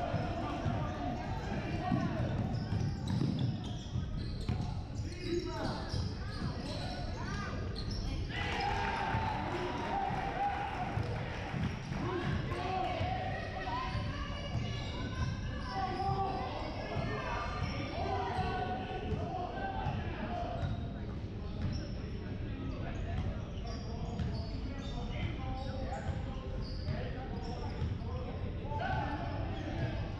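Basketball dribbled on a hardwood gym floor, a run of repeated bounces, with indistinct players' and spectators' voices echoing in the large hall.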